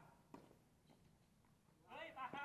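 A tennis ball is struck by a racket once, a single sharp pock about a third of a second in, against near silence on an outdoor hard court.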